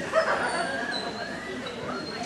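A dog barks loudly about a fifth of a second in, over the steady hum of voices in a large indoor hall.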